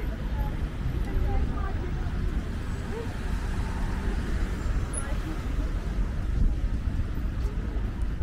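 Street ambience beside a road: cars passing on the road and snatches of passers-by talking, over a steady low rumble.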